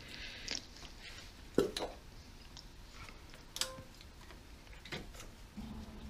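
A few light, scattered clicks and one brief clink of engine parts being handled: ignition coils being pulled off an engine and set aside.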